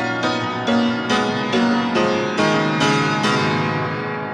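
Solo piano playing a symphonic movement in piano reduction: a new chord or note is struck about every half second, and each one rings and fades into the next.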